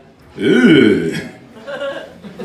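A man's loud, drawn-out, deep "uhh" into a handheld microphone, its pitch rising and then falling, starting about half a second in and lasting under a second.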